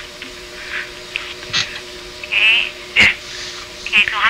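Telephone call audio during a pause in the conversation: a steady low hum on the line, with a few brief faint voice sounds and a sharp click about three seconds in.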